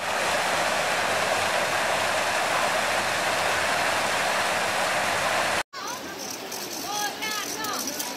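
Water rushing steadily over a small stone weir on a creek. It cuts off suddenly about five and a half seconds in, giving way to a quieter flowing creek with short, high chirping calls.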